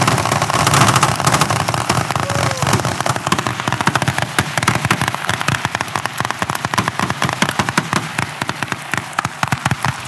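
Rapid gunfire from many rifles fired at once along a crowded firing line, with shots overlapping into a dense crackle. Toward the end it thins into more distinct, separate shots.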